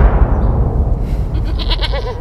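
Trailer soundtrack: a deep, low rumbling boom like a timpani hit, with a short animal bleat about one and a half seconds in.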